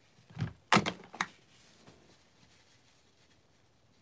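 Handling noise from a headset cable being taken off close to the microphone: a soft thump, then two sharp knocks about a second in, the first the loudest, followed by quiet room hiss.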